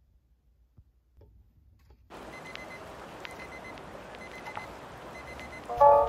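Near silence, then from about two seconds in a steady faint hiss of room noise with a few light ticks. Background music comes in near the end with a bright chord.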